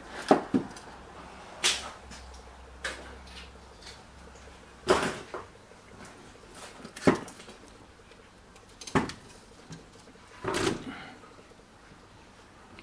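Handling noise: a string of separate knocks and clicks, one every second or two, some ringing on briefly.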